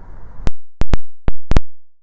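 About six sharp, very loud digital clicks spread over a second and a half against dead silence, after a moment of faint background noise: an audio glitch at a cut between shots.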